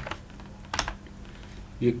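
A couple of sharp computer keyboard key clicks a little under a second in: the Enter key being pressed to run a typed shell command.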